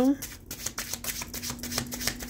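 A deck of tarot cards being shuffled by hand, overhand: a quick run of soft card flicks, about six a second.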